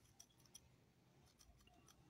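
Near silence with a few faint clicks and scrapes from a large knife blade cutting into the inside of a small ring of very hard wood: a couple early in the first second and a short cluster near the end.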